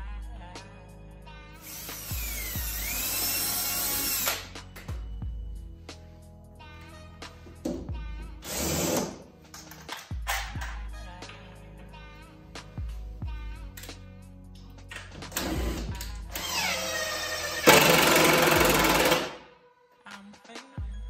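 Cordless drill-driver running in three bursts, driving screws into a plywood panel; the first run dips in pitch as it loads, and the last, longest run near the end is the loudest. Background music plays throughout.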